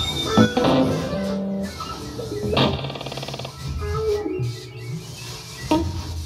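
Live experimental band music: saxophone, keyboard and electric guitar playing shifting, gliding tones over low held notes, with a buzzy held tone for about a second in the middle.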